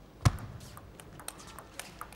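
Table tennis serve and rally: one loud knock as the serve is struck about a quarter second in, then a quick run of light, sharp clicks as the ball bounces on the table and comes off the bats.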